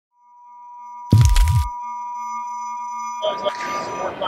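A steady 1 kHz reference tone fades in, with a loud low thump about a second in lasting about half a second. A little after three seconds the tone cuts off and the chatter of a crowded hall takes over.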